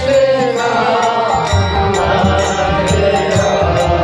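Devotional kirtan: a harmonium is played with held, reedy chords under a chanting voice, with sharp percussion strikes recurring through the music.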